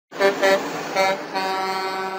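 Truck horn honking: three short toots, then a long held blast from about halfway through.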